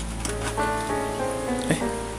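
Clear plastic blister tray crackling and clicking as it is handled and pried open, over background music with steady held notes.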